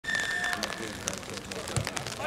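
A short, steady, high whistle blast lasting about half a second, typical of a referee's whistle signalling the kick-off. It is followed by faint spectators' voices and a few sharp knocks, the last and heaviest just before the end.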